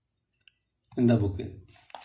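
Near silence for about a second with a couple of faint clicks, then a voice speaking, with a short click near the end.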